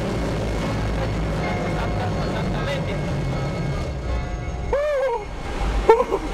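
XPeng AeroHT X2 flying car's electric rotors running with a steady low drone that dies away about four seconds in, as the craft settles after its test flight. Near the end comes a single short rising-and-falling vocal cry.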